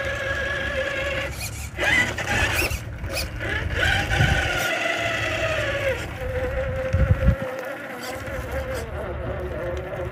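Electric RC rock crawler's motor and geared drivetrain whining at crawl speed, its pitch gliding up and down as the throttle is fed in and eased off. Two short low thumps come about four and seven seconds in.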